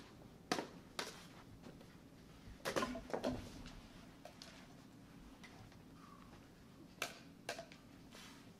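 Scattered sharp knocks and clicks from a staged fight with prop swords on a carpeted floor: two early, a small cluster about three seconds in, and two more near the end.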